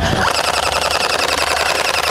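Electric gel blaster firing on full auto: a rapid, even buzz of shots that runs without a break for about two seconds.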